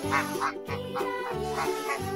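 Domestic geese calling with beaks open, a series of short harsh honks, over children's background music.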